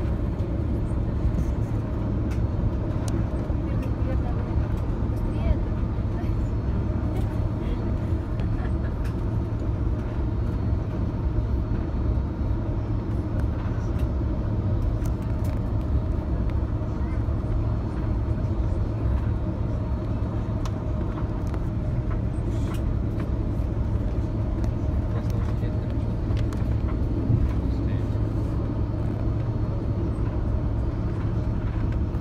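Cabin noise inside an Airbus A330-200 taxiing, with the steady low rumble and hum of its Pratt & Whitney PW4000 engines at taxi power. Scattered faint clicks run through it.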